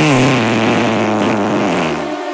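A cartoon elephant's fart sound effect: one long, loud fart whose pitch drops at first, then holds low and steady before stopping near the end.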